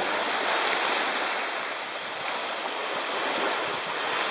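Small waves washing onto a sandy beach: an even rushing that eases a little midway and swells again.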